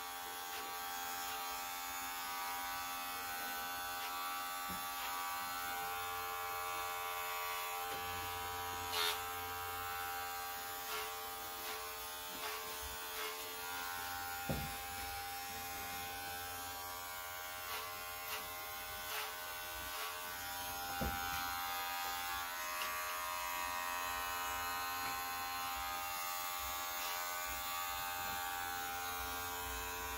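Electric hair clippers running with a steady buzz while cutting hair, with a few light taps scattered through.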